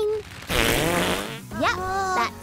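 Cartoon fart sound effect from two baby characters: a raspy, wavering blast about a second long, starting about half a second in.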